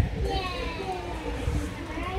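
Indistinct background chatter of children and adults in a busy room, with high-pitched children's voices rising over the general murmur.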